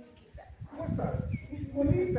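Several people talking indistinctly, the voices growing louder from about halfway through.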